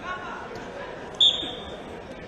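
A short, sharp referee's whistle blast a little over a second in, over a hall full of crowd chatter.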